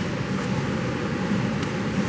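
Steady hum and rush of air inside a 2013 Toyota Corolla's cabin with the ignition switched on.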